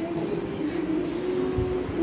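A steady low hum holding one pitch, over room noise, with a single dull thump about one and a half seconds in.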